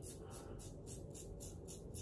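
Faint scratching of a safety razor drawn over lathered stubble, low under the room tone.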